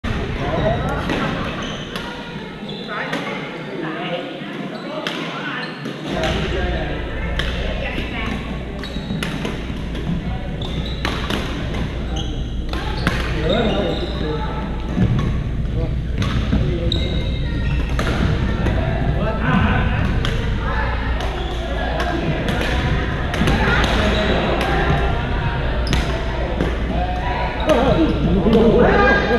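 Badminton rackets hitting shuttlecocks in rallies: frequent, irregular sharp clicks in a large gymnasium. Players' voices from the courts underneath, and a steady low rumble that comes in about six seconds in.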